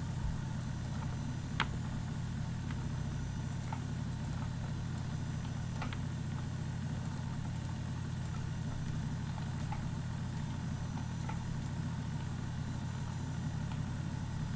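Steady low electrical hum under the recording, with a few faint clicks, the clearest about a second and a half in.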